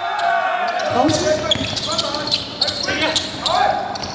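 A basketball bouncing on a hardwood gym court during a game, with sharp knocks of play and players' voices calling out.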